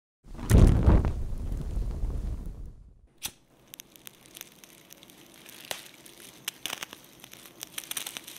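Fire sound effect: a loud low whoosh of flames that dies away over about two and a half seconds, a single sharp snap, then a quieter fire crackling and popping.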